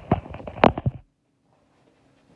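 Rustling and several sharp knocks from a phone being handled and moved. The sound cuts off abruptly about halfway through, leaving near silence.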